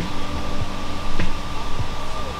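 A steady hum with several sustained, unchanging tones held underneath it.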